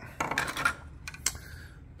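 Plastic face plate of an Aiphone intercom station being unclipped and pulled off the wall unit: a quick run of clicks and plastic clatter under a second in, then a few lighter clicks.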